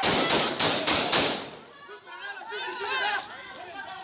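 Gunfire: about five warning shots in quick succession, roughly four a second, within the first second or so, each crack trailing off in echo. Women's voices shouting follow.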